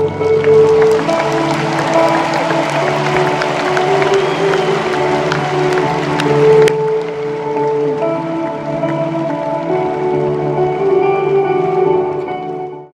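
Live band holding slow, sustained ambient keyboard chords as a song closes. Crowd cheering and applause run over the first half and cut off suddenly about seven seconds in.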